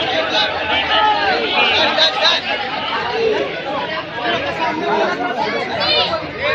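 Dense crowd chatter: many voices talking and calling out over one another at once.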